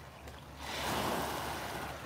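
A small wave washing up onto a sandy beach: a soft rush of water that swells about half a second in and slowly fades.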